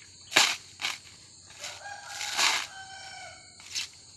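Coconut husk ripping and cracking in short sharp bursts as it is levered apart on a pointed husking spike. A rooster crows once in the middle, one long call of about two seconds.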